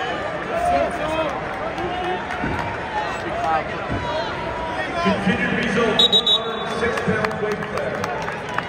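Arena crowd noise at a wrestling tournament: many voices of spectators and coaches talking and shouting at once, with a few short sharp sounds about six seconds in.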